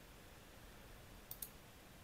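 Two faint computer mouse clicks in quick succession, otherwise near silence.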